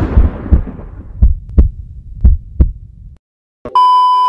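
Edited intro sound effects: a music chord dies away into a low rumble with deep thumps in pairs, like a heartbeat, which cuts off about three seconds in. After a brief silence a steady, high beep tone starts near the end, with a glitchy transition.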